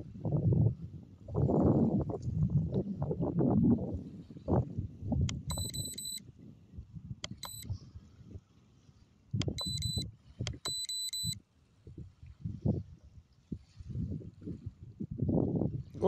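Gusty wind buffeting the microphone in uneven low rumbles, strongest in the first few seconds. Four short bursts of rapid, high-pitched electronic beeping come in the middle.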